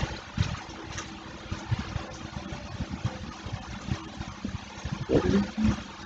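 Low, irregular rumbling background noise with a faint steady hum, and a brief murmur of a voice near the end.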